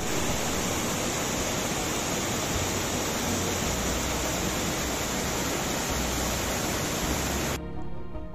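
Mountain stream cascading over granite boulders in a small waterfall: loud, steady rushing water. It cuts in abruptly and cuts off shortly before the end, with music faintly beneath it.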